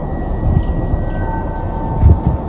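Steady low outdoor city rumble, with a low thud about half a second in and faint thin high tones holding steady through it.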